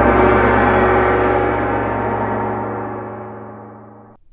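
A gong ringing out after a single strike, its dense shimmering tone slowly fading away and then cut off abruptly at the end.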